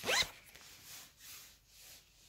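A zipper pulled once at the very start: a short rasp rising quickly in pitch.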